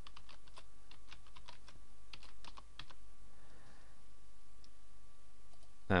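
Typing on a computer keyboard, a quick run of keystrokes entering an email address, stopping about three seconds in. A faint steady hum lies underneath.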